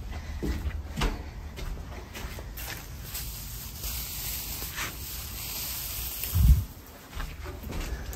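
Dry hay rustling and crackling as it is pulled by hand from stacked bales, with one dull low thump late on.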